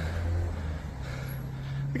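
Road traffic: a vehicle engine running with a steady low hum.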